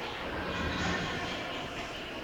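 Foil candy wrappers crinkling and rustling as they are pushed by hand into a cloth pillowcase, with a low rumble in the background during the first half.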